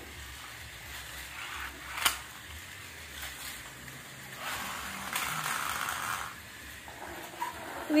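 Faint clatter of small plastic toy cars on a plastic track set, with one sharp click about two seconds in and a soft rustling stretch in the middle.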